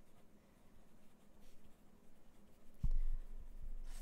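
Pen writing on paper in faint, scratchy short strokes. A low thump about three seconds in is louder than the writing.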